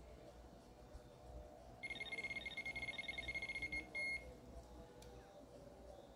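Electronic fishing bite alarm on a pike rod sounding a fast run of high beeps for about two seconds, ending in a brief steady tone: line being drawn through the alarm.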